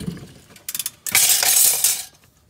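Metallic rattling and scraping of parts around the car's rear axle and hub. A few sharp clicks come first, then a loud, dense clatter for most of the second half.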